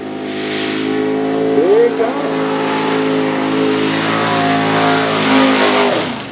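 Race truck engine running hard at steady high revs, with a short rising rev about two seconds in.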